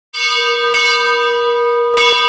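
A bell struck three times, its ringing tone sustaining between the strikes.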